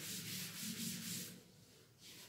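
Chalk being wiped off a chalkboard with a board duster: a run of quick back-and-forth rubbing strokes through the first second and a half, then dying away.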